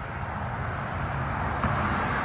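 Steady low outdoor background rumble, with no distinct event standing out.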